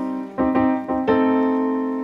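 Piano playing slow, held chords: one struck about half a second in and another about a second in, each left to ring and fade.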